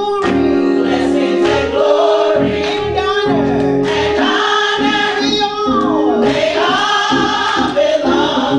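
Gospel choir singing with women's lead voices, over instrumental accompaniment with long held notes and a rhythmic bass line.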